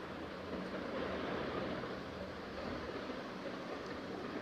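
Steady background noise: an even hiss with a faint low hum beneath it.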